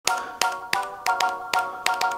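Small handheld electronic keyboard playing a steady, held electronic tone over a clicking rhythm of about three beats a second.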